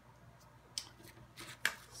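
A sheet of drawing paper being slid and turned on a table: a few short scraping rustles in the second half, the loudest near the end.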